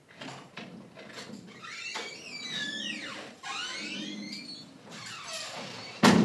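Quiet ambience of an empty room: a low steady hum, with several faint, high gliding calls from about a second and a half in until past four seconds.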